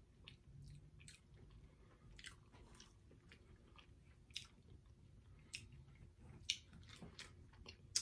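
A person chewing and biting into a snack held in the hand, quiet and close to the microphone, with scattered small crackles at irregular intervals.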